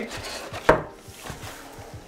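Paper dust-cover backing on the back of a canvas print rustling as it is handled and held up off the wooden frame, with one sharp knock a little under a second in.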